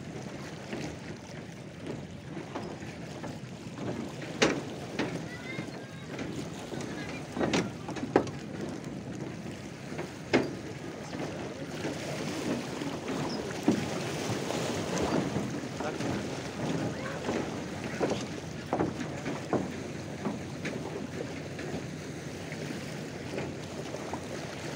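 Small lake waves lapping and splashing at the water's edge: a steady wash with a few sharper slaps now and then.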